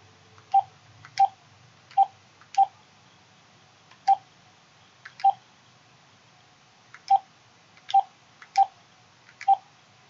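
Smartphone keypad tones as digits are tapped in: ten short beeps of one pitch at an uneven pace, each with a faint tap click.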